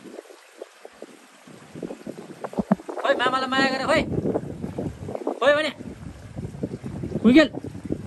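A high voice calls out several times in drawn-out, wavering cries: a long one about three seconds in, then two shorter ones, the last rising in pitch, with wind rumbling on the microphone between them.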